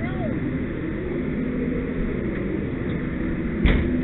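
Steady low rumble of a fire engine's diesel running, with a single knock near the end.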